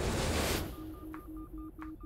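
Sound-designed computer interface beeps: a brief rush of noise, then rapid electronic bleeps pulsing about four times a second in two tones together, with a couple of sharp clicks.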